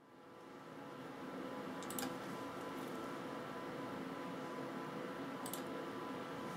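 Steady hum of a running desktop PC's cooling fans, with two short mouse clicks, one about two seconds in and one near the end.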